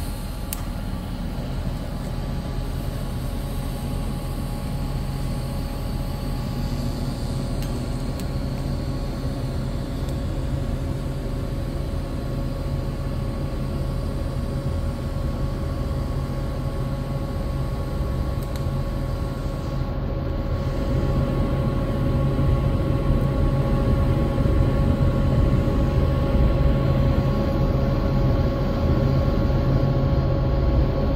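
TIG (gas tungsten arc) welding arc burning with a steady hum while filler wire is fed into the root of an open V-groove joint in 3/8-inch plate. It grows somewhat louder about two-thirds of the way through.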